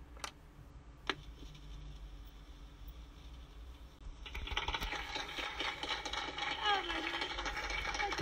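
Turntable stylus set down on a vinyl LP with a couple of clicks, then the record's surface noise: crackle and hiss that grows louder about four seconds in.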